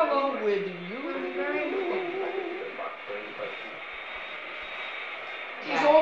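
A woman's voice ends a phrase with a long downward slide in pitch in the first second, then quieter talking carries on until a louder voice breaks in near the end.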